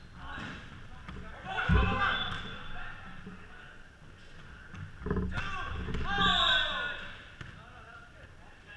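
Volleyball rally in a gym: players shouting calls to each other, with two sharp thuds of the volleyball, the louder about two seconds in and another about five seconds in.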